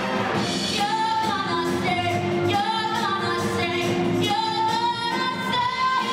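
A woman singing a stage-musical solo in long held phrases, the notes rising and falling, over steady instrumental accompaniment.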